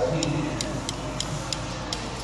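A steady ticking, about four ticks a second, over indistinct voices in the background.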